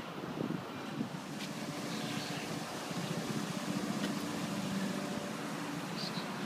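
A motor engine's steady low drone, growing louder through the middle and then easing off, like a vehicle or boat passing.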